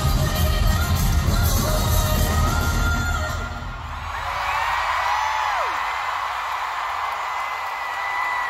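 Live pop concert music with heavy bass ends about three and a half seconds in. A large arena crowd follows, cheering and screaming, with high whoops rising above the roar.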